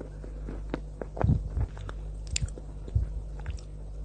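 Edible white chalk coated in cocoa sauce being bitten and chewed: irregular crisp crunches and clicks, the loudest cluster a little over a second in.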